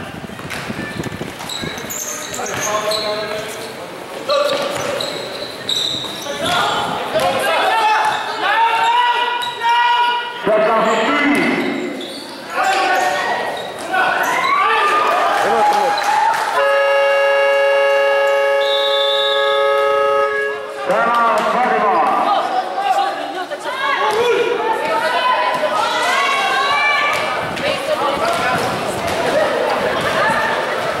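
Gym scoreboard buzzer sounding one steady horn tone for about four seconds, midway through, over shouting voices and basketballs bouncing on the court.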